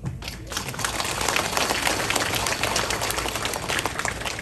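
Audience clapping, starting about a third of a second in and then holding steady.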